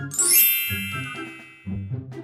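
A bright chime sound effect rings out about a quarter second in and fades away over about a second and a half, over background music with a repeating low bass line.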